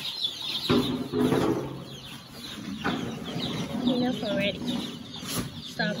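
A flock of day-old broiler chicks peeping, many short high chirps overlapping without pause, with a few knocks among them.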